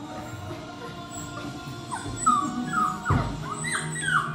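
Puppy whimpering in a run of short high whines from about halfway in, each sliding down in pitch, as it strains up on its hind legs reaching for a treat. A low thump comes a little after three seconds.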